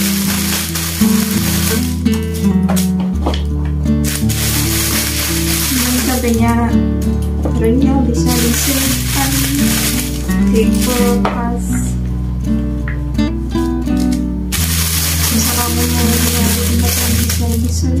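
Background music with held low notes throughout. Over it comes the rustle of a thin plastic bag being handled, in three long stretches: at the start, around the middle of the first half, and near the end.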